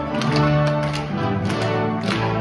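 Theatre orchestra playing a Christmas carol live, with sustained pitched notes over a regular beat of percussive strikes.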